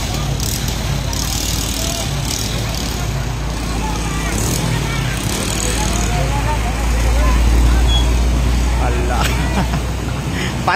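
Vehicles driving through a flooded road, engines and churning water under a steady din, with a crowd talking in the background. A low rumble swells from about seven to nine seconds in as a vehicle comes close.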